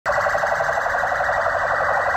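Police vehicle's electronic siren sounding loud and steady in a rapid warble.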